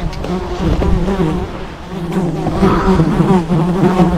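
Beetle flying close to the microphone: a wavering wing buzz that wobbles up and down in pitch, louder in the second half.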